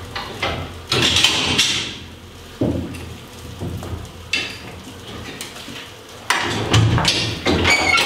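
Wooden honey frames knocking and clattering against each other and the metal rail as they are slid forward into a honey extractor. There is a loud clatter about a second in, quieter knocks through the middle, and a louder run of clatter near the end.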